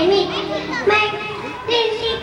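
A young child speaking into a microphone in a high voice, in short sing-song phrases.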